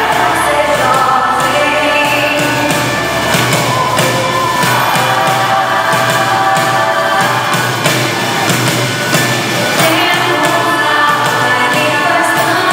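Live pop song from a band with a woman singing lead and a steady drum beat, recorded from the audience in a hall.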